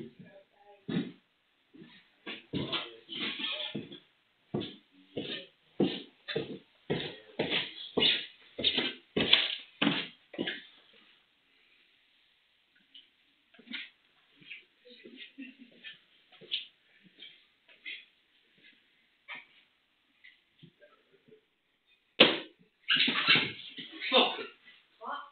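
Footsteps coming down wooden stairs, about two a second, then softer steps across the floor, heard through a CCTV camera's microphone. Near the end comes a sudden loud bang, the loudest sound here, which goes unexplained.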